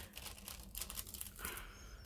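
Clear plastic cover film on a diamond painting canvas crinkling faintly in many small crackles as it is lifted off the sticky adhesive and smoothed back down by hand.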